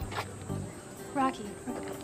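A thin, steady high-pitched electronic whine switches on suddenly and holds, faint beneath a short voice and background music.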